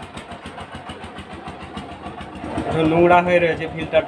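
An engine running nearby with a fast, even knocking beat. A voice calls out briefly about three seconds in.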